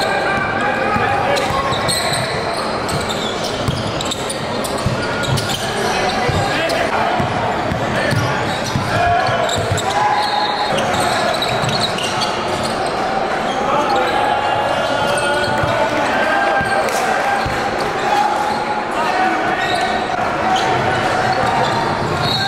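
Live sound of a basketball game in a gym hall: indistinct voices of players and spectators with basketball bounces on the hardwood floor, echoing in the large room.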